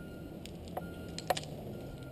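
A few light clicks of climbing hardware, carabiner and rings, being handled on the climbing rope, the sharpest about a second and a half in.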